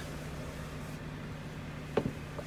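Steady low hum with a faint air hiss inside the cabin of a 2009 BMW X5 with its rear climate control running, ending in a single sharp click.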